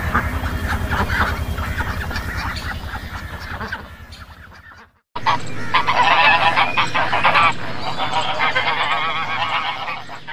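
Ducks calling for the first few seconds, fading before a sudden cut about five seconds in. Then a flock of white domestic geese honking loudly, many calls overlapping.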